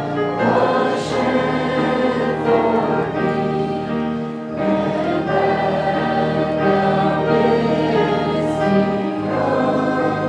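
Congregation singing a hymn together with organ accompaniment, the organ holding steady bass notes under the voices and changing them every few seconds.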